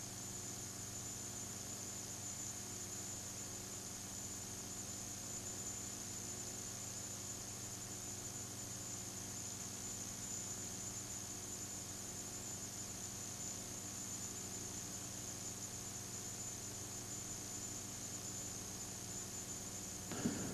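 Low, steady hiss and hum with no other sound in it: the recording's own noise floor, with no announcer, crowd or hooves standing out.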